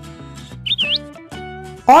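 Light children's background music. About two-thirds of a second in comes a short chirping whistle, a sound effect that dips and rises quickly in pitch.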